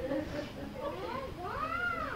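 A single drawn-out, high-pitched wavering cry in the second half, rising and then falling in pitch, heard faintly in the room behind the sermon pause, with a little laughter or murmuring before it.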